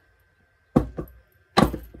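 Sharp metal knocks from a bench ring stretcher/reducer being worked to stretch a ring: two quick light ones just under a second in, then a louder clunk with a short ring-out about a second and a half in.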